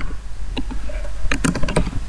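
Computer keyboard typing: a few scattered keystrokes, then a quick run of keys in the second half.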